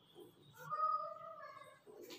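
One faint, drawn-out, high-pitched call lasting about a second, beginning about half a second in: a single pitched voice-like sound, too high for the man's speaking voice, like an animal's call.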